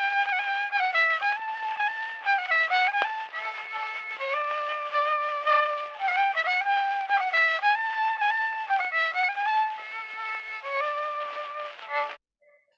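Archival 1914 phonograph recording of a Romanian folk violinist playing a fast dance tune, its melody moving quickly from note to note. The sound is thin and narrow, with no bass, like an early cylinder recording. It stops abruptly near the end.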